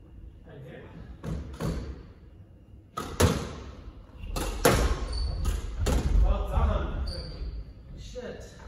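Squash ball being struck by rackets and smacking off the court walls during a rally: a string of sharp, echoing cracks, most of them between about three and six seconds in.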